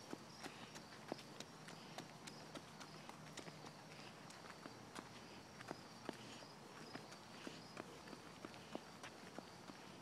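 Faint footsteps on a concrete sidewalk: a toddler's small shoes and the steps of the adult following her, heard as light, irregular clicks a few times a second over quiet outdoor hiss.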